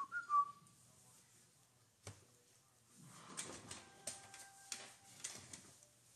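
A brief whistle-like chirp, the loudest sound, right at the start. Then, after a single click about two seconds in, soft clicks and rustling from trading cards being handled and slid into plastic sleeves.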